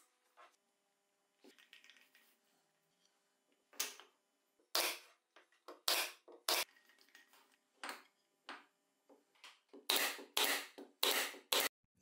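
Pneumatic brad nailer firing nails into plywood: a series of sharp shots, about a second apart at first, then five in quick succession near the end.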